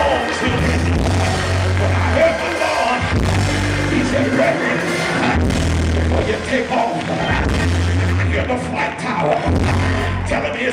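Live church band music, loud and steady, with a bass line of long held low notes about a second each, and a voice over it.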